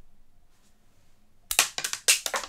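Small hard parts clicking and rattling in the hand: a quick run of sharp clicks starting about one and a half seconds in, after a stretch of quiet room tone.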